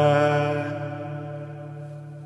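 Gregorian chant voices holding the last note of the hymn's closing "Amen" in a low, steady tone that fades gradually.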